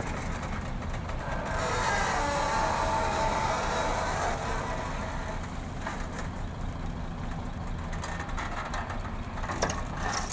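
Diesel engines of a Hyundai excavator and a stationary UD Nissan V8 dump truck running steadily, the excavator's engine and hydraulics working harder for a couple of seconds about 1.5 s in. A few knocks near the end as the bucket's load starts to drop into the truck bed.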